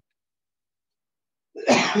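A man coughs once, starting about one and a half seconds in.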